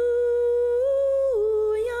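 A single voice singing a slow, sustained melody line: a held note that glides up a step just before a second in, then down, then up slightly near the end.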